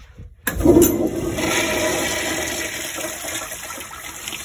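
Tankless commercial toilet with a flushometer valve flushing. A sudden loud rush of water starts about half a second in, then eases slowly as the bowl swirls.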